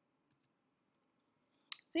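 Near silence, broken by a single faint short click about a third of a second in; a woman's voice starts again near the end.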